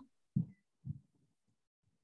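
Near silence on a video-call line, broken by two brief low thumps about half a second apart, the first louder than the second.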